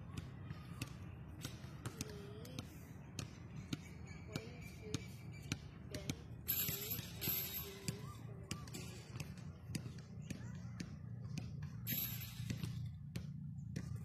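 Scattered, irregular thuds of basketballs bouncing on an outdoor court, over a steady low background rumble and faint voices.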